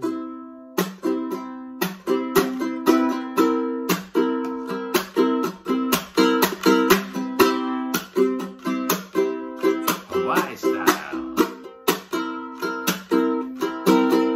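Ukulele strummed in a steady rhythm, several chords a second, moving through a chord progression.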